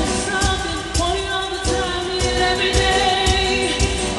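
A woman singing a pop song live into a handheld microphone over band or backing music with a steady drum beat.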